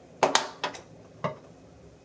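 Scissors snipping through packaging, a few short sharp clicks in the first second and a half.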